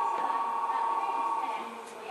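Keio 7000 series chopper-controlled electric train heard from inside the car, with a steady high-pitched whine from its chopper control over the running noise; the whine fades about a second and a half in.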